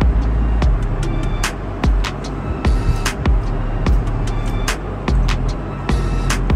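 Background music with a steady beat: heavy bass and sharp percussion hits recurring at even spacing.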